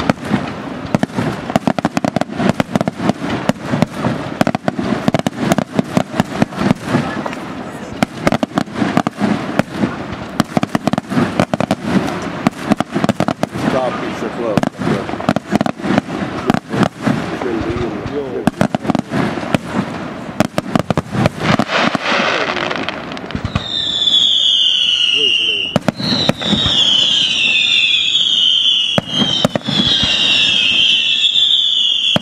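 Aerial fireworks display: a rapid, dense crackle of many bangs for about twenty seconds, then, from roughly twenty-four seconds in, several overlapping high whistles, each falling in pitch, over continuing reports.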